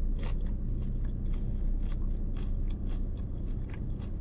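A person chewing food with the mouth close to the microphone: a run of small irregular crunches and mouth clicks, over a low steady hum.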